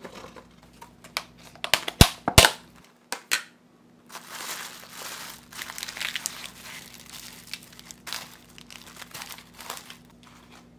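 Plastic shrink-wrap on a plastic noodle cup crinkling and tearing as it is peeled off by hand, in a long crackly stretch through the second half. Before it, about two seconds in, comes a quick run of sharp plastic clicks and knocks, the loudest sounds here.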